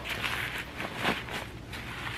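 Plastic cling wrap and paper rustling and crinkling as hands pull them off a block of raw fish, with a few sharper crinkles about a second apart.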